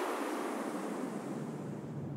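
A long falling whoosh of filtered noise, its pitch sinking steadily as it slowly fades: the downward noise-sweep effect that ends an electronic dance track.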